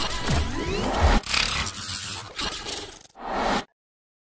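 Electronic sound effects of a logo intro sting: noisy sweeps with a deep hit about a second in, stopping suddenly shortly before the end.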